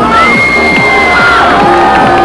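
A large crowd cheering and shouting, with long high-pitched screams held and bending in pitch, over loud music.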